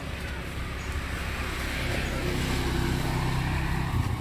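Road traffic noise, with a motor vehicle's engine hum growing louder from about halfway through.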